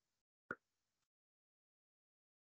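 Near silence on a muted-sounding call line, broken by a single short click about half a second in.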